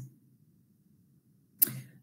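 Near silence in a pause between a woman's spoken phrases. About one and a half seconds in, a short mouth click and breath come as she starts to speak again.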